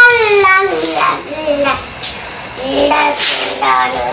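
A young child's high-pitched voice in sing-song vocalizing without clear words: a held, slightly falling note at the start, then shorter calls near the end.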